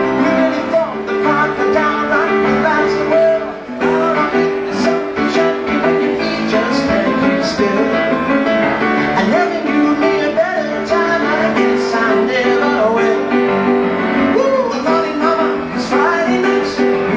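A grand piano played live, with a man singing along to it.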